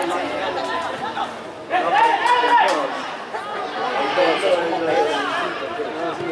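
Several voices of football players and spectators talking and calling out over one another, with a louder call about two seconds in.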